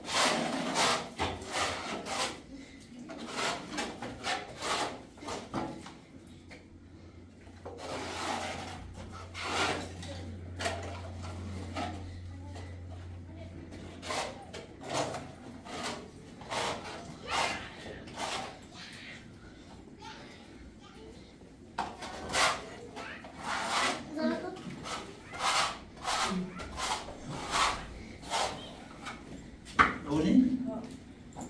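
Trowel spreading and scraping wet plaster across a wall in repeated rasping strokes, about one or two a second, with a couple of short pauses. A low steady hum runs under the middle stretch.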